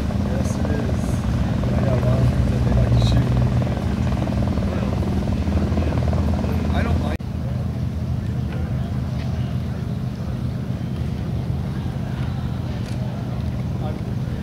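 Republic Seabee amphibian's pusher piston engine running at low taxi power on the water, a steady drone. It breaks off abruptly about halfway, where the sound changes to a Seabee idling close to shore.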